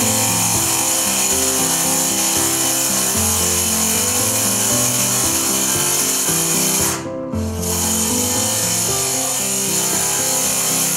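Sliding-head electric tile saw running steadily as it cuts a decorative stone tile. Background music with a shifting bass line plays over it. The high part of the saw sound briefly drops out about seven seconds in.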